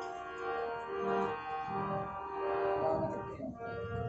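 Harmonium played alone, a slow melody of held reed notes that change every second or so.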